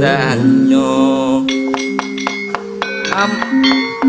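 Javanese gamelan playing: struck metal keys ringing with steady tones, strikes coming thick from about a second and a half in, with a wavering sung voice over the first second or so.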